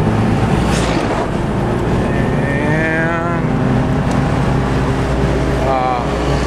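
Steady engine hum and road noise inside a moving car's cabin as oncoming trucks pass close by. A long pitched sound that rises and wavers runs through the middle, about two to three and a half seconds in.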